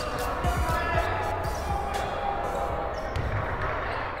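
Basketball game sound in a gym: a ball bouncing on the hardwood court a few irregular times, over voices and music.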